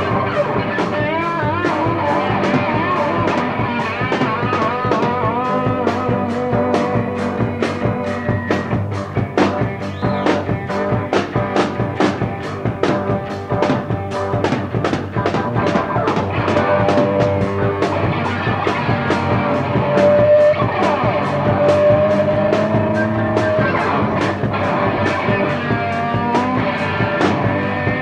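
Live rock band playing an instrumental passage with no vocals: drums keep a steady beat under guitar and keyboard lines, with a wavering lead line near the start and a long held note later on.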